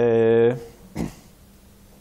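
A man's long hesitation sound 'eee', held on one steady pitch and ending about half a second in, followed by a short soft breath-like sound and a pause.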